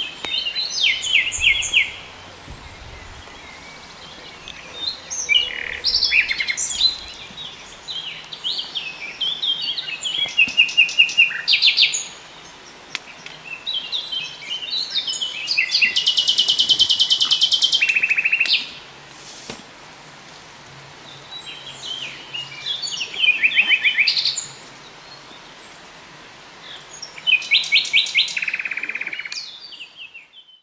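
Wild songbirds singing in woodland: several short phrases of fast repeated notes, with one long rapid trill of about two seconds near the middle. A soft steady background hiss lies beneath, and everything fades out at the very end.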